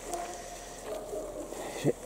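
A quiet pause between a man's spoken phrases: faint background with a faint steady tone in the first part. His voice starts again at the very end.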